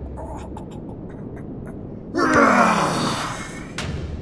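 A man's drawn-out anguished groan that falls steadily in pitch, starting about halfway through, after a few short crackling clicks over a low background rumble.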